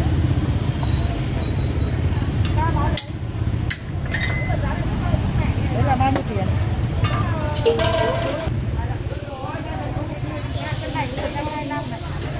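Busy street-market ambience: several people talking over one another, with motorbike engines running close by, loudest in the first few seconds, and a few sharp clinks.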